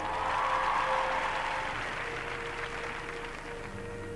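Audience applauding over the gymnast's accompaniment music, loudest at the start and dying away after about three seconds as the music carries on.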